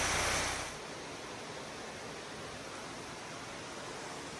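Steady rushing of a small mountain waterfall, dropping to a quieter, steady hiss about a second in.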